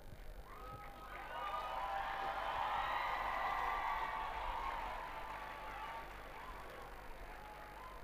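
Background music with several held tones, swelling up about a second in and fading away in the last couple of seconds.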